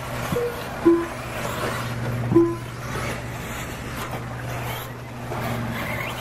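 Three short electronic beeps in the first half, over a steady low hum and the faint noise of electric RC buggies running on a dirt track.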